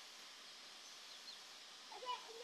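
Near silence: faint outdoor ambience with a few faint, high bird chirps.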